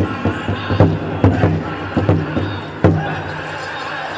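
Powwow drum group playing for a Men's Traditional dance: the big drum struck in a run of uneven beats, with several hard accented strikes, and the singers' high voices rising toward the end.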